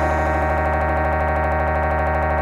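A sustained synthesizer chord held steady with no drums, shimmering with a fast even pulse: the closing note of an electronic rock track.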